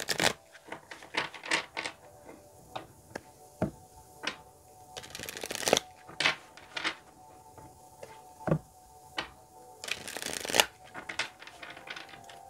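A deck of tarot cards being shuffled by hand: irregular light taps and snaps of the cards, with two longer riffling bursts about five and ten seconds in.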